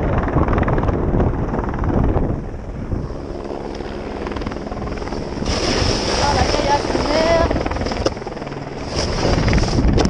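Snowboard edge scraping and carving on firm snow, with wind buffeting the helmet-mounted action camera's microphone. A steady hum, typical of a helicopter overhead, comes through in the middle.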